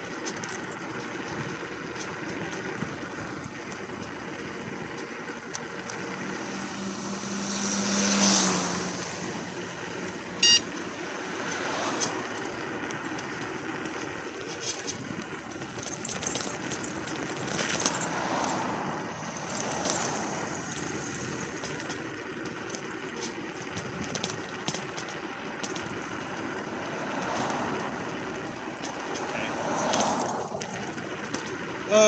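Road traffic and wind rush heard from a slow-moving electric scooter. Cars swell past several times, and one passing vehicle's low hum drops in pitch as it goes by. A short, loud, high beep sounds about ten seconds in.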